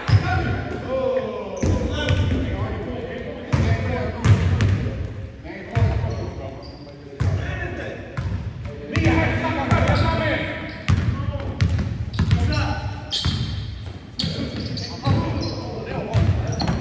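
A basketball bouncing repeatedly on a wooden gym floor during a pickup game, mixed with players' voices calling out across the court.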